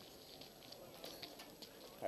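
Faint footsteps on brick paving, a few irregular light ticks, over quiet pedestrian-street background.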